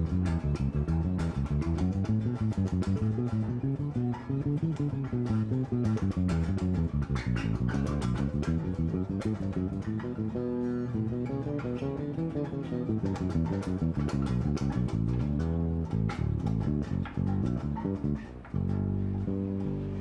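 Solo electric bass guitar playing quick scale runs in B minor, climbing and descending the neck note by note, with a few longer held notes near the end.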